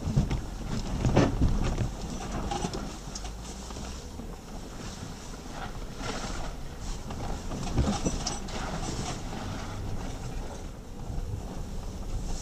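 Jeep Grand Cherokee (WK2) driving slowly over a rough, rutted dirt trail, heard from inside the cabin: a steady low engine and drivetrain hum with knocks and rattles from the body and suspension over bumps, loudest about a second in and again near eight seconds.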